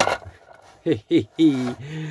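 A sharp knock at the start, as the toy carousel is set down on the bench, then a man's short chuckle and a held hum.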